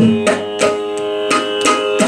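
Mridangam played solo: a run of sharp, unevenly spaced strokes, some ringing on a short pitch, over a steady held drone.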